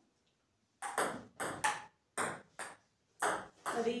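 Table tennis rally: a celluloid-type ball clicking off the bats and bouncing on the table, about eight hits in quick succession starting about a second in.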